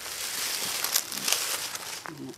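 Rustling, crinkling handling noise as a handheld camera is moved, with a few sharper crackles about a second in.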